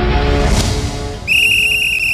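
Sports-programme theme music with a swell about half a second in, then a long, high, steady referee's whistle blast starting just past the first second.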